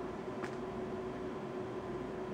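Steady low hiss with a faint steady hum: background room tone on the electronics bench. There is one faint tick about half a second in.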